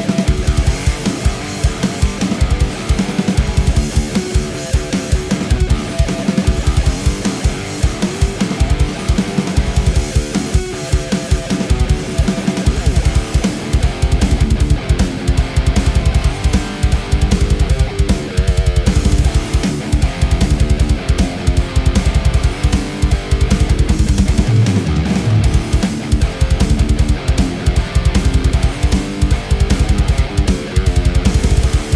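Vola Oz Supernova electric guitar played with a high-gain distorted tone in a heavy metal riff, with drums, in a fast, dense low rhythm that runs without a break.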